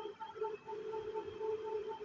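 Faint steady hum with a higher tone pulsing about five times a second over light hiss.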